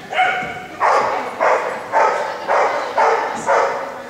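A dog barking repeatedly, about seven loud barks at roughly two a second.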